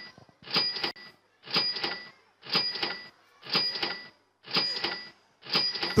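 Countdown timer sound effect ticking once a second with a short, ringing metallic tone, marking the ten seconds of thinking time for a quiz question.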